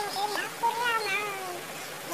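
Kitten meowing: a short meow right at the start, then one long, drawn-out meow that sags slightly in pitch.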